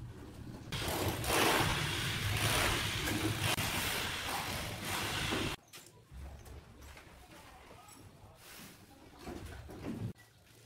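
Soil pouring out of a tipped wheelbarrow onto a dirt pile: a loud rushing hiss that starts about a second in, lasts about five seconds and cuts off suddenly. After it come quieter faint scrapes and knocks.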